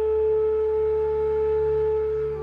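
Background music holding one steady, pure note, with a low drone beneath it.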